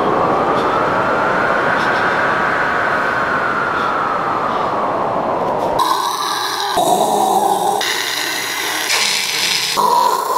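A penguin colony calling in a dense, continuous chorus. About six seconds in, a man takes over with imitation penguin squawks in a run of held calls, changing about once a second.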